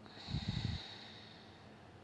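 One loud breath out close to the microphone, about half a second long, with a fainter hiss trailing on briefly after it.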